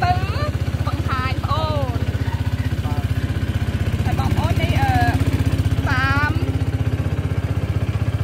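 Small motorboat's engine running steadily underway, a low drone with an even rapid pulse.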